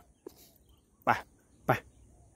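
A man's voice saying two short words, "pai, pai" ("go, go"), urging a bird to fly.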